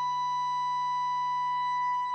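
A single steady held musical tone from an electric guitar through the Line 6 Helix preset's ambient effects, sustaining without change.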